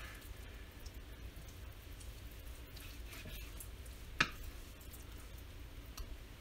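Faint sounds of raw pork tenderloin being cut with a knife on a wooden cutting board and handled, with one sharp tap a little after four seconds in.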